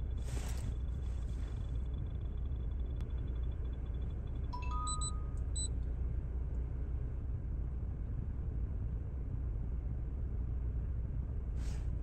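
2017 Chevrolet Equinox engine idling steadily, a low rumble heard from inside the cabin. A few short electronic beeps sound about four to five seconds in.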